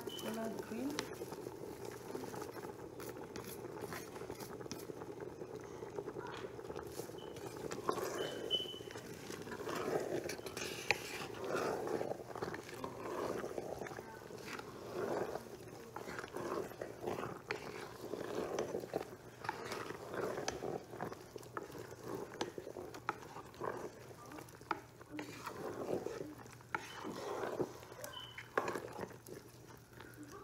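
Pot of okra soup simmering with a steady bubbling as leafy greens go in. From about eight seconds in, a wooden spoon stirs the greens through the soup in repeated, irregular wet strokes.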